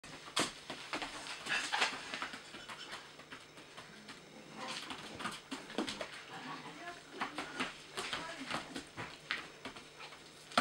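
A young puppy's paws and claws tapping and scuffling on a hard floor in a run of sharp clicks as she jumps and turns after a treat held above her.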